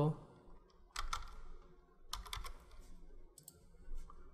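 Computer keyboard keystrokes in a few short clusters: about a second in, a quick run around two seconds, and one more near the end.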